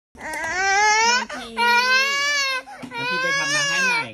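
A toddler crying loudly in three long wails, each about a second long.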